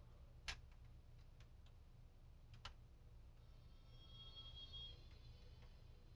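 Near silence: room tone with a low hum, two faint clicks and a faint high tone in the middle.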